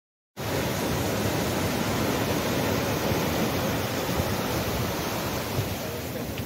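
Ocean surf washing over a sandy beach: a steady rushing of water that cuts in suddenly a moment after the start.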